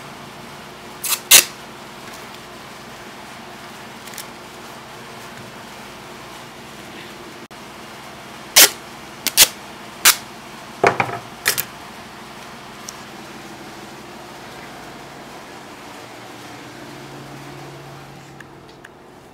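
Clear tape being pulled off the roll and cut with scissors to mend a paper picture book: a pair of short, sharp rips about a second in, then a quick run of five more between about 8 and 11 seconds, against a steady low room hum.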